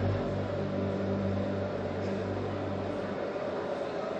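A steady low hum, its deepest tone dropping away about three seconds in.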